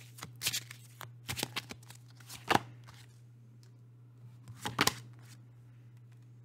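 A tarot deck being shuffled and handled: a run of crisp card slaps and riffles over the first few seconds, then a quieter stretch and a few more card sounds shortly before the end, over a low steady hum.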